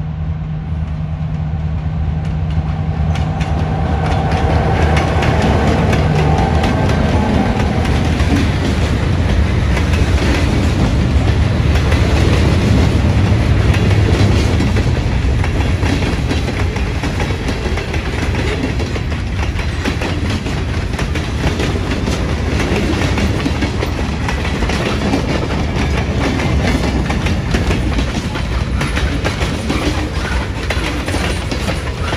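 A pair of EMD GP38 diesel locomotives, two-stroke V16 engines, passing with a steady engine drone that gives way after about six seconds to the rumble of a freight train's covered hoppers and tank cars rolling by, wheels clicking and knocking over the rail joints. Loudest in the middle as the cars pass closest.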